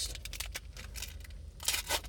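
Foil trading-card pack wrappers crinkling as they are handled, with scattered sharp crackles near the start and again near the end.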